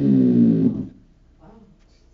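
A sustained electronic keyboard tone with many overtones, sliding down in pitch and cutting off under a second in.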